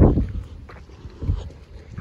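Wind buffeting the phone's microphone: an uneven low rumble, with a couple of faint brief sounds in between.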